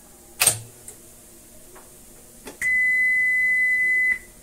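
A sharp click as a transport control on a Sony TC-765 reel-to-reel deck is pressed. About two and a half seconds in, a steady, pure test tone starts from a Magnetic Reference Laboratory calibration tape. It is the reference tone used to check and set the deck's tape speed.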